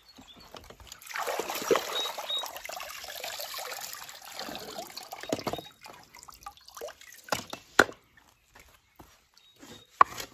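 Pool water sloshing and splashing for a few seconds as a skimmer net is swept through it, then water dripping and trickling off the lifted net. A single sharp tap comes about eight seconds in.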